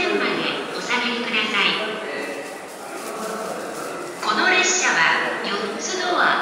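Platform public-address announcement in Japanese: a spoken voice over the station speakers, with a quieter pause in the middle.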